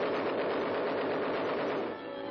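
Police rifles firing in a rapid, unbroken volley: a cartoon gunfire sound effect on an old soundtrack that has lost its high end.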